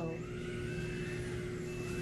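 A steady low machine hum with faint, thin higher whining tones over it, unchanging throughout.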